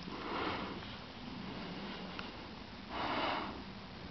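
A person sniffing twice through the nose, two short breaths about three seconds apart.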